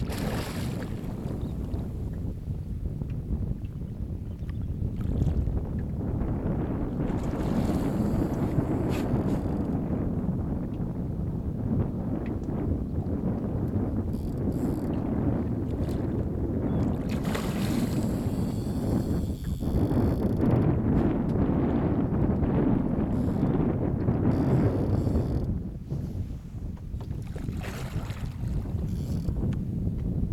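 Wind buffeting the microphone on open water: a steady low rumble, broken several times by short bursts of hiss.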